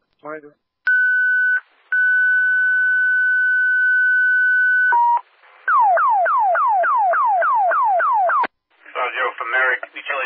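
Fire dispatch alert tones over a scanner radio, the paging signal before a dispatch. First a short steady beep, then one tone held about three seconds and a brief lower beep. Then a run of about ten quick falling-pitch sweeps, roughly three a second, before a voice comes back on near the end.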